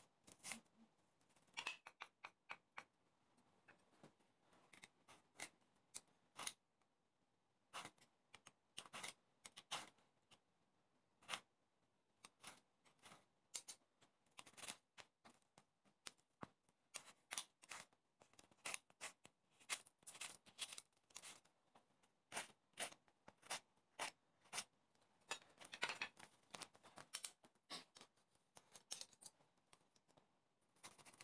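Kitchen knife chopping lettuce and onion on a plastic cutting board: crisp, sharp cutting strokes in quick runs, with short pauses between them.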